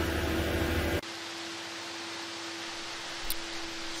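A low engine rumble, the running concrete mixer truck, cuts off abruptly about a second in. It gives way to a steady, quieter hiss with a faint, even hum.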